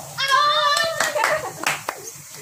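High-pitched voices calling out, then a few sharp hand claps in the second half.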